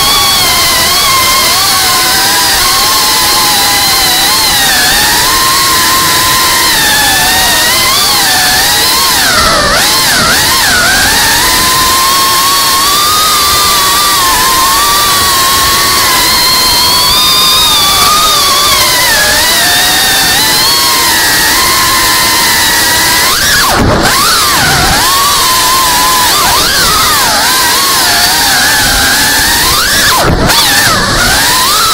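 FPV quadcopter's brushless motors and propellers whining, the pitch wavering up and down with the throttle. About two-thirds of the way through, and again at the very end, the whine drops sharply and climbs straight back.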